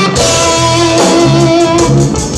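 Live band music: a lead instrument holds one long note from just after the start to near the end, over repeating bass notes and drums.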